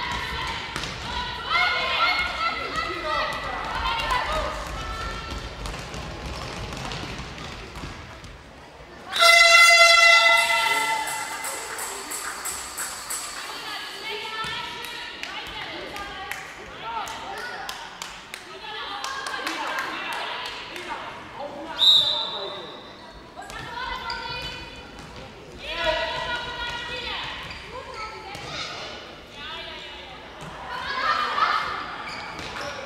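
Handball in a sports hall with echoing voices and the ball bouncing on the hall floor. About nine seconds in, a loud horn sounds suddenly and its echo dies away over several seconds; a short blast of a referee's whistle comes a little after twenty seconds.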